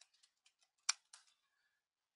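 Computer keyboard keys typed in a quick, uneven run of faint clicks, the loudest about a second in.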